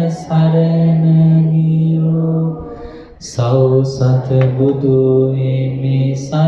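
A male voice chanting Pali verses in long, drawn-out held notes: one sustained note, a short breath about halfway through, then a lower sustained note.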